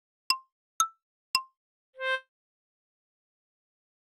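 Edited-in cartoon 'pop' sound effects: three quick, bright plucked pops about half a second apart, then one lower, slightly longer pitched note about two seconds in.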